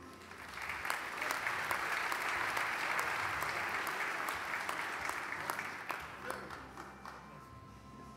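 Audience applauding in a large hall, swelling in the first second, holding steady, then dying away about six to seven seconds in.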